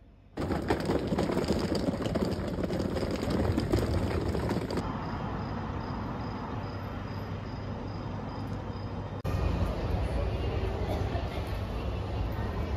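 Background sound from a run of short clips that cut abruptly into one another: a noisy stretch, then a quieter steady hum with a faint high tone, then a louder steady hum.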